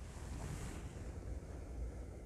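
Low, steady rumbling noise from the handheld camera's microphone as it is moved, with a brief hiss about half a second in.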